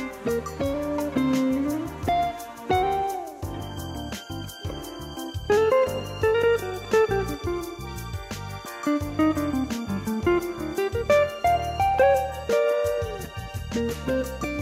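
Hollow-body archtop electric jazz guitar playing a single-note smooth-jazz melody with bends and slides, over a steady beat and bass line.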